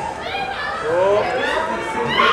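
Excited, high-pitched voices of a group of young people talking over one another, with no distinct words.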